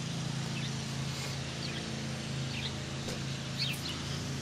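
Steady low engine hum with a few short bird chirps over it.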